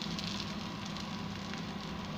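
Butter sizzling and crackling on a hot iron tawa as a buttered pav bun toasts in it, a steady, even sizzle.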